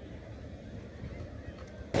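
Faint open-air background rumble, then near the end a sudden loud bang that dies away over about half a second.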